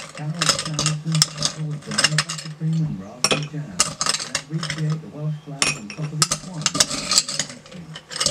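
Metal bar spoon scooping ice cubes from a glass of ice and dropping them into a highball glass: a quick, irregular run of clinks and rattles of ice and metal against glass.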